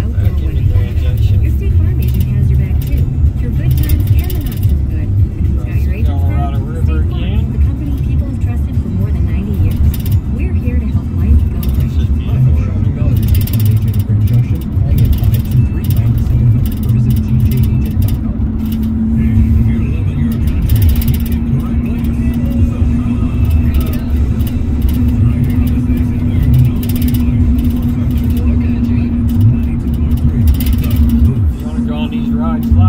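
Steady low rumble of road and engine noise inside a moving car's cabin, with the car radio playing faintly underneath. A steady hum joins a little past halfway.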